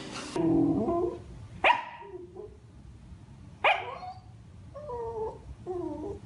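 Corgi barking: two sharp single barks about two seconds apart, with short whiny, falling vocal sounds before and after them.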